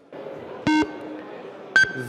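Two short electronic beeps over a steady hall murmur: a lower beep about two-thirds of a second in that lingers briefly, and a higher one near the end. They are the parliamentary voting system's signal as the roll-call vote closes and the result comes up.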